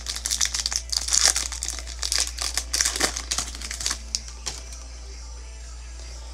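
Foil wrapper of a Panini Chronicles football card pack being torn open and crinkled by hand. It makes a dense run of crinkles and crackles that dies away about four and a half seconds in.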